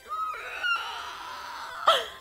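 A woman imitating a velociraptor's call with her voice: a short hoot, then a long, breathy, hissing screech.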